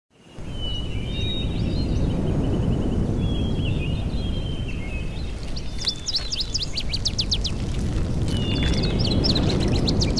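Birds chirping and trilling over a steady low rumble of outdoor noise. From about halfway through, the chirps come in quick clusters of short downward sweeps.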